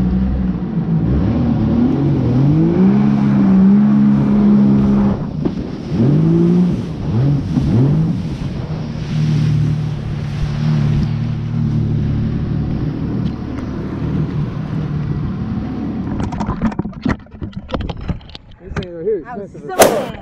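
Yamaha personal watercraft (jet ski) running at speed over choppy water, its engine pitch rising and falling with the throttle over the rush of water and spray. About four seconds before the end the engine sound drops away, leaving splashing and a series of knocks and clatters, the loudest just before the end.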